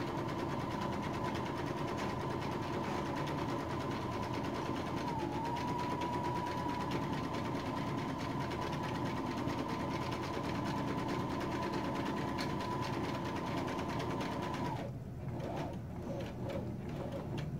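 Electric household sewing machine running steadily as it stitches the side seam of a fabric cushion cover. Its hum dips briefly about five seconds in and the machine stops near the end.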